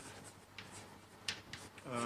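Chalk writing on a blackboard: a few short, faint scratching strokes as letters are written.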